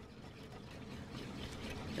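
Faint sound of a wire whisk beating thin pancake batter in a stainless steel mixing bowl, over a steady low hum.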